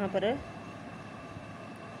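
A woman says one word at the start, then a steady background hum with a faint, thin high whine runs on evenly.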